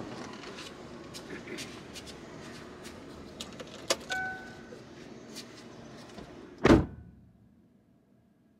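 Quiet ambience inside a parked car, with small clicks and rustles and a short electronic beep about four seconds in. A single loud thump comes near seven seconds, a car door being slammed shut.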